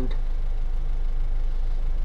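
Steady low rumble of cabin noise inside a Mercedes-Benz B-Class, from the car's engine and running gear.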